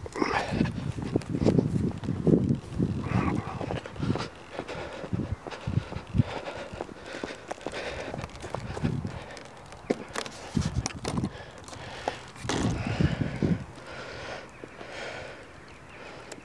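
Footsteps of a person walking across grass, a run of irregular low thuds and rustles.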